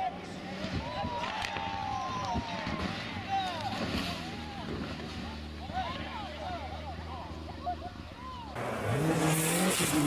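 Rally car engine with spectators' voices shouting. Near the end, a cut to a snow stage brings a louder rushing noise and an engine revving up and then down.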